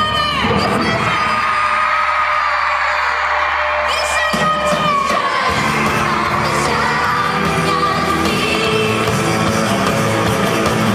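Live pop-rock band playing on stage, with a girl's singing voice over electric guitars, drums and keyboards. The bass and drums drop out for the first few seconds and come back in about four seconds in.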